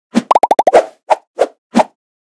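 Cartoon-style pop sound effects for an animated title: a rapid run of five short pitched pops, each dipping in pitch, followed by three single pops about a third of a second apart.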